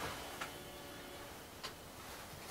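Low room hiss in a pause of the speech, broken by a few soft, irregularly spaced clicks.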